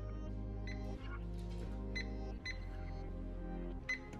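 Background music playing, with a few short high beeps from a microwave's touch keypad as its buttons are pressed.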